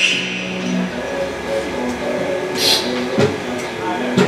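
Flamenco guitar played softly: single plucked notes that ring out one after another, with a short hiss about two-thirds of the way through.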